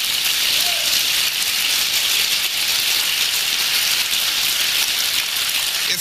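Audience applauding steadily, a dense clatter of many hands that fades as the speaker resumes.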